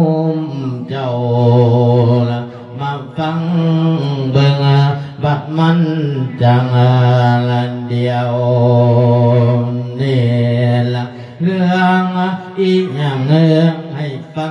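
A monk's solo male voice chanting a thet lae, the melodic Isan-style sung sermon, amplified through a handheld microphone. He sings long held notes, each about one to two seconds, with gliding pitch turns and short breaths between phrases.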